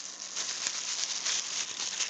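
Plastic bubble wrap rustling and crinkling as it is handled inside a cardboard box, with many small irregular crackles.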